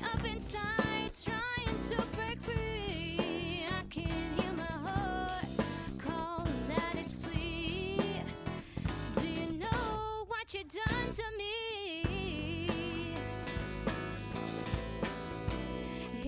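Acoustic pop song played live by a small band: a woman singing over strummed acoustic guitar, electric bass and drum kit. About ten seconds in, the bass and drums drop out for a couple of seconds, then come back in.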